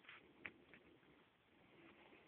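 Faint rustle of paper pages being flipped in a trade paperback comic book, a few soft flicks near the start with one sharper tick about half a second in.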